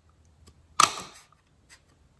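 A paper hole punch snapping once through watercolor paper, a single sharp click about a second in.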